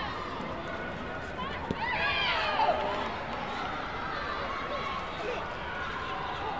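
Sports-hall babble of voices with high-pitched shouts from the taekwondo bout. A single sharp smack about two seconds in fits a kick landing on an electronic body protector, and loud yells follow right after it.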